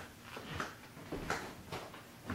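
Faint handling noise in a small room: a few soft taps and rustles about half a second, a second and a quarter, and a second and three quarters in, over quiet room tone.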